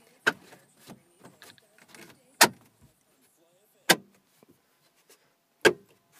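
A PT Cruiser's plastic dash bezel being pressed and snapped into place by hand. A smaller knock comes near the start, then three sharp snaps about a second and a half apart, with small plastic clicks between them.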